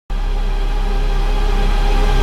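Logo-intro sound effect: a loud, sustained synthesized drone with a heavy deep bass and many stacked steady tones, starting abruptly and slowly swelling as a build-up.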